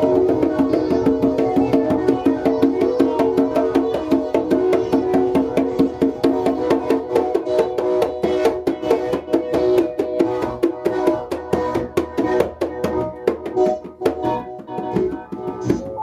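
Hand-played congas in a fast, steady pattern under held synthesizer chords. The synth chords thin out over the last few seconds, leaving mostly the congas.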